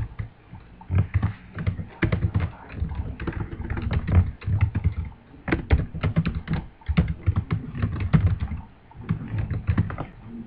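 Typing on a computer keyboard: quick irregular runs of keystrokes, with short pauses between words.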